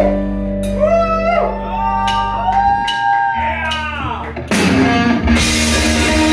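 Live rock band playing a power ballad: a lead line with wide, swooping pitch bends over held bass notes, then the full band with drums and crashing cymbals comes in about four and a half seconds in.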